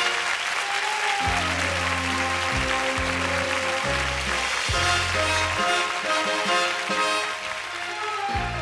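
Live stage orchestra playing an instrumental copla passage with a stepping bass line while a studio audience applauds; the clapping thins out near the end.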